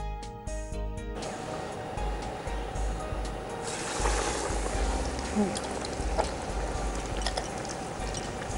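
Background music stops about a second in, followed by a steady hiss that grows brighter about three and a half seconds in: batter-coated potato patties sizzling as they deep-fry in hot oil in a kadai.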